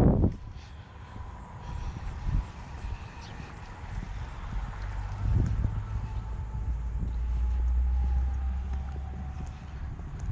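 Wind rumbling on the microphone. A low, steady drone swells up in the second half and fades near the end, and a faint whine slowly falls in pitch.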